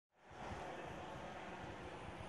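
Faint outdoor street ambience: a steady low hiss with an uneven low rumble like wind on the microphone, starting a moment after silence.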